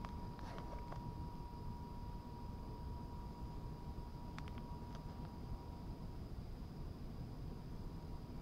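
Faint night-time background: a steady low rumble with a thin, steady high tone over it, and a few light clicks about half a second in and again around four and a half seconds.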